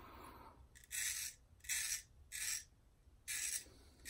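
Straight razor blade scraping through lathered stubble on the neck and chin, in four short strokes a little under a second apart.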